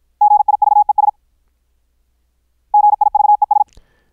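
High-speed Morse code word sent twice as a clean sine-wave tone from the QRQ training app, regenerated through the sineCW plugin at about 53 words per minute. There are two rapid bursts of dits and dahs at a single pitch, each just under a second long, about a second and a half apart: the current word being repeated on the F6 key.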